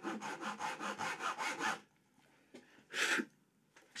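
Japanese dozuki pull saw cutting short, quick strokes into a knife-walled kerf across the end of a wooden board, about six strokes a second, establishing the cut; the sawing stops just under two seconds in. A single short rasp follows about three seconds in.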